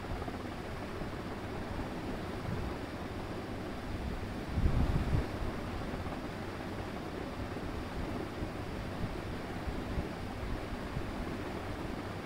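Steady background hiss and room noise with no speech, with a brief low rumble a little before halfway through.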